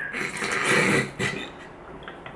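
A man's stifled laughter: a breathy burst lasting about a second, then fading.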